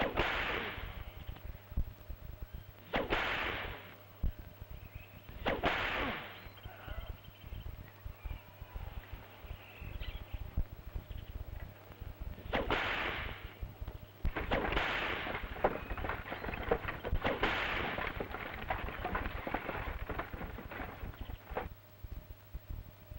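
A whip lashing a man's bare back during a flogging: a series of sharp cracks, each trailing off quickly. The first few come about three seconds apart, and after a pause a quicker run of lashes follows. A steady low hum runs underneath.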